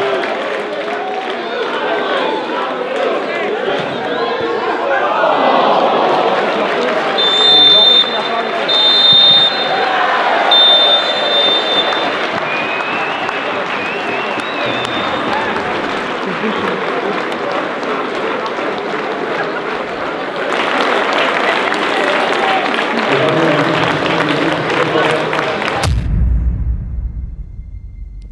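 Football stadium crowd cheering and shouting, with a referee's whistle blown three times about seven to twelve seconds in, the full-time whistle.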